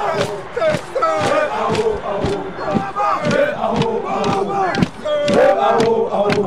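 A group of Zulu men chanting and shouting war cries together, many voices overlapping, with sharp beats about twice a second.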